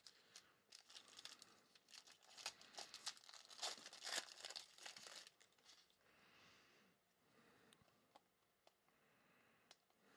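A foil trading-card pack wrapper is torn open and crinkled by hand, making a faint, dense run of crackles for about five seconds. Softer rustling of the cards follows.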